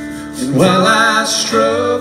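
Live folk-rock band music: a strummed acoustic guitar with a sung male vocal line coming in about half a second in.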